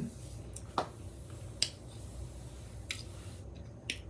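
Wet mouth clicks and smacks from chewing a gyro sandwich, four or five short sharp ones spread over a few seconds, over a low steady hum.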